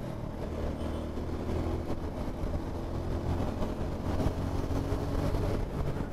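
Motorcycle engine running steadily at cruising speed, heard from the rider's seat: a Yezdi Adventure's single-cylinder engine holding an even note, with road and wind noise underneath.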